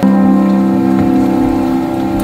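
A keyboard chord struck suddenly and held steady, several sustained tones together without fading.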